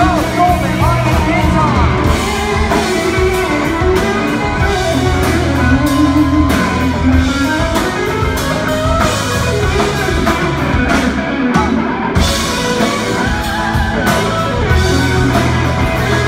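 Live rock band playing loudly and steadily: electric guitar and acoustic guitar over a drum kit.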